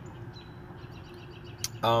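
A pause between spoken phrases: low background noise with a faint steady hum and faint high chirps, one short sharp click a little before the end, then a spoken 'um'.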